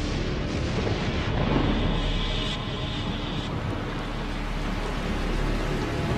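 Thunderstorm: a steady rushing hiss of heavy rain with low rumbling, swelling slightly about one and a half seconds in, over soft background music.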